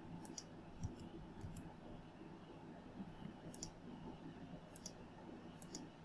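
Faint computer mouse button clicks, about five quick double ticks spaced a second or so apart, as copies are placed one by one in a CAD program.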